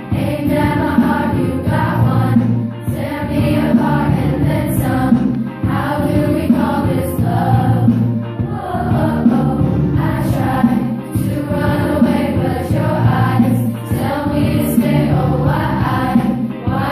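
Beginning junior high girls' choir singing together, many young female voices holding and moving between sung notes.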